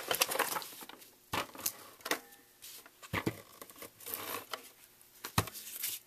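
Cardstock and paper being handled and slid across a scrapbook layout as a photo mat is positioned to be stuck down: quiet rustling and sliding of card, with three sharp clicks or taps spread through it.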